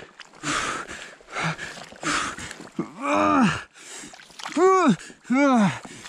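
A man straining to free himself from a peat bog: heavy gasping breaths and the slosh of wet mud in the first half, then three long strained groans.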